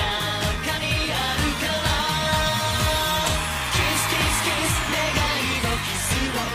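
Upbeat J-pop song with a male vocal over a steady dance beat and bass line.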